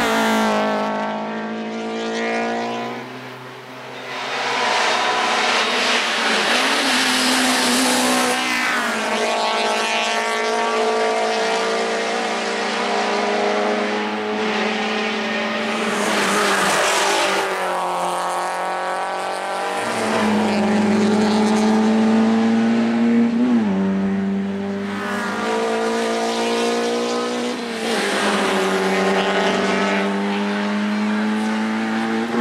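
Small racing cars' petrol engines revving hard as they climb past, one after another. The engine pitch climbs and drops again and again through gear changes and lifts for corners.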